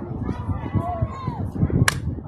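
Softball bat striking a pitched softball: one sharp crack near the end, over faint background voices.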